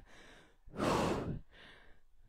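A woman exhales hard once, about a second in, into a close headset microphone. It is a breathy rush of air with no voice, breathing hard from exercise.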